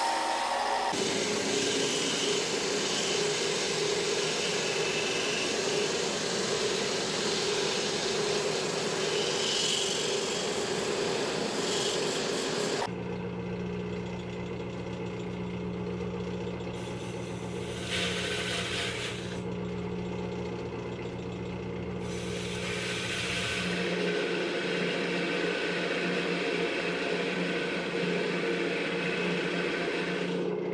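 Wood lathe spinning a thin maple dome while a gouge takes shavings off its top, a dense steady shaving noise. About 13 seconds in the sound changes to a lower, steadier hum with short spells of cutting as a fluted parting tool works in to part the piece off.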